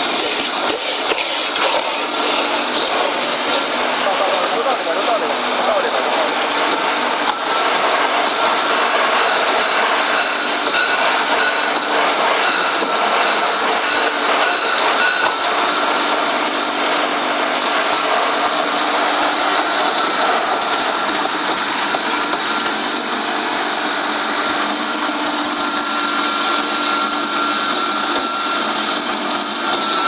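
Colloid mill running steadily under load as it grinds raw meat into paste, its motor and grinding head giving a loud, continuous mechanical noise with a steady whine. For several seconds midway a run of regular clicks sounds over it.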